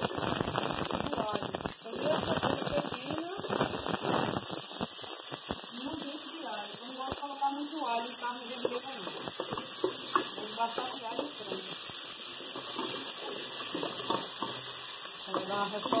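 Chopped onion, garlic and peppers sizzling as they are tipped into hot oil in a pot, densest for the first four seconds or so, then settling to a quieter sizzle.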